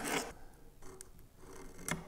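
Faint scratch and taps of a pencil and metal square marking a line on a beech board, with a light tick about a second in and a sharper one near the end.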